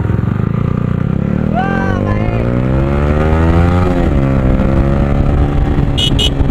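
Yamaha R15 motorcycle's single-cylinder engine accelerating, its pitch climbing, dropping at an upshift about four seconds in, then climbing again.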